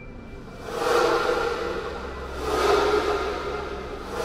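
Ambient electronic music with low sustained tones and three whooshing swells, each rising and fading over about a second.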